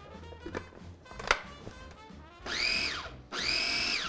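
Cuisinart Mini-Prep Plus food processor pulsed twice, two short whirring bursts that rise in pitch and fall away, chopping fresh herbs. A sharp click comes about a second in.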